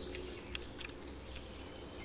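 European hornet queen moving on her paper nest: faint scratching on the paper, with a few small ticks about half a second to a second in.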